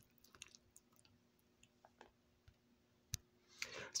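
Near silence with a faint steady hum and a few faint clicks, one sharper click a little after three seconds in: a metal spoon and paper noodle cup being handled.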